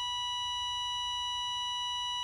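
Steady electronic test tone, the single-pitch beep played with colour bars, held at a constant level with no change.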